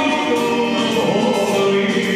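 Loud live band music with a singer on a microphone, held pitched notes over a steady beat.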